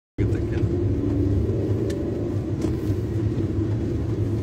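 Steady low rumble of a small car's engine and tyres, heard from inside the cabin while driving, with a couple of faint ticks about halfway through.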